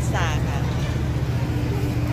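A steady low engine-like hum runs throughout, with a woman speaking briefly at the start and a faint steady tone joining about a second in.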